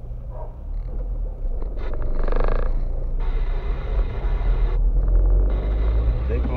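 Low, steady rumble of a car's engine and tyres heard from inside the cabin while driving slowly. A short pitched sound comes about two seconds in, and a hiss switches on about three seconds in, stops for a moment near five and starts again.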